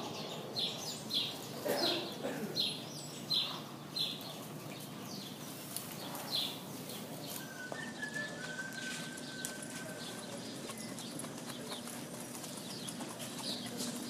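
Racehorse walking, its hooves clip-clopping in a steady run of sharp strikes for the first four seconds, then fewer and fainter.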